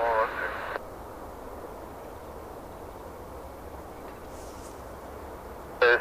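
Air traffic control radio transmission cutting off abruptly under a second in, leaving a steady faint hiss and low rumble; another radio transmission begins near the end.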